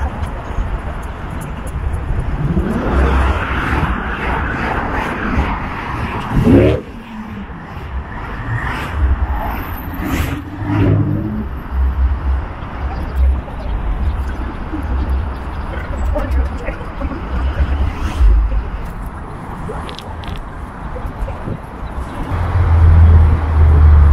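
City street traffic heard while walking along a sidewalk: cars passing, with a swell of traffic noise a few seconds in. Irregular low bumps sound on the microphone throughout.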